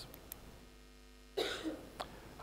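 A man coughs once, briefly, just past halfway.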